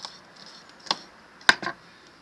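Kitchen knife clicking against a wooden cutting board while thinly slicing a red chili: a few separate sharp clicks, the loudest about one and a half seconds in.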